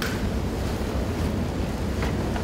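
Steady low hum and hiss of room tone through the hall's sound system, with no distinct events.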